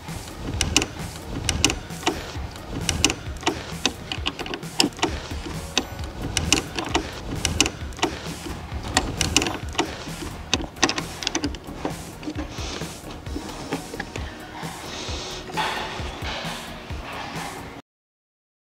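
Background music over irregular metallic clicks and taps from a 10 mm spanner being worked on the negative battery terminal's clamp nut to loosen and remove it.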